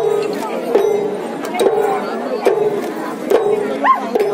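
Rhythmic theyyam ritual accompaniment: a sharp stroke a little faster than once a second, each followed by a held pitched note or call, with crowd voices underneath.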